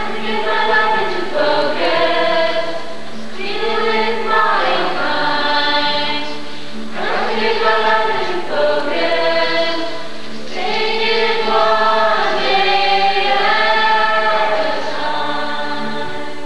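A group of voices singing a song together, in phrases of a few seconds each.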